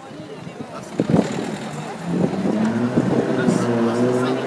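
An engine running nearby, a steady low hum that comes in about halfway through, over faint background voices.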